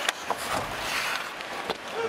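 Ice hockey arena sound during play: a steady crowd murmur with sharp clacks of stick and puck, one at the start, one shortly after and one near the end.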